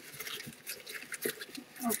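Paper slips rustling and scratching inside a small box as a hand digs through them: quiet, irregular scrapes. A voice starts right at the end.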